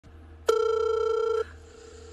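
Phone ringtone for an incoming call: one electronic ring of a single steady pitch, starting about half a second in and lasting about a second.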